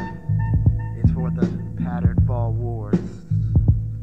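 Underground hip hop instrumental beat: a deep sustained bass line with regular drum hits, and a pitched sound wavering up and down around the middle.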